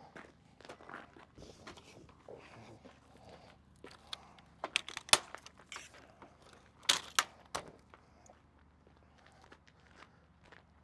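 Footsteps crunching on gravel, with a few sharp clicks and knocks, about halfway through and again a couple of seconds later, as the metal legs and pole of a Fiamma F45 motorhome awning are handled.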